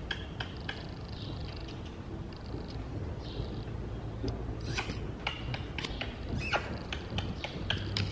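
Horse trotting under a rider on soft dirt arena footing: a run of dull hoofbeats with scattered light clicks.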